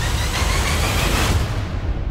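Cinematic trailer sound design: a loud, dense rumble with a hissing wash over it and music beneath. The hiss drops away about one and a half seconds in.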